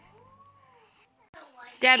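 A young child calling out "Dad" in a high voice that rises and falls in pitch, near the end. Before it, in the first second, a faint tone glides up and back down.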